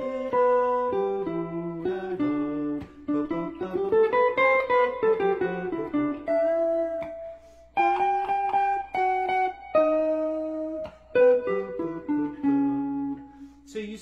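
Gibson Custom L-5 archtop jazz guitar played unaccompanied: a continuous run of single-note jazz lines over the tune's chord changes, with a few notes held for about a second.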